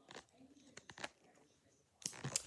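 Near silence, with a few faint clicks from small fabric and zipper handling on a doll's jacket.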